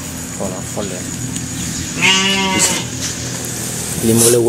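A single wavering, bleat-like cry about two seconds in, lasting under a second, with faint voices before it.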